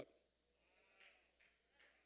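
Near silence: room tone, with a couple of very faint short sounds about a second in and near the end.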